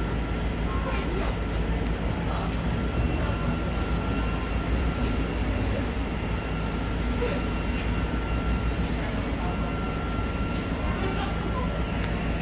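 Cabin noise of a Linkker LM312 battery-electric bus under way: a steady low rumble with a faint steady high whine.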